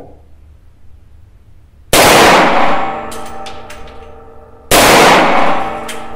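Two shots from a Desert Eagle .357 Magnum semi-automatic pistol, about two and three-quarter seconds apart, each very loud and followed by a long ringing decay in the small range booth.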